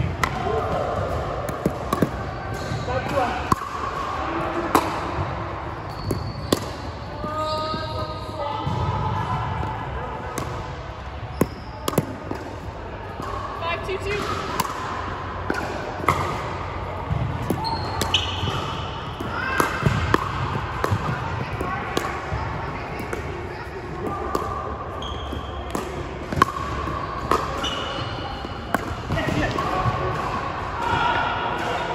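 Pickleball rally: sharp, irregularly spaced pops of paddles striking a plastic ball and the ball bouncing on a hardwood court, with short high squeaks of sneakers on the floor, in a large gym.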